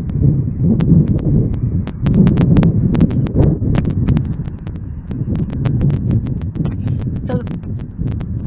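A large flock of golden plovers taking flight. A dense, low rush of wings and wind is broken by many sharp clicks and flaps, and it starts abruptly.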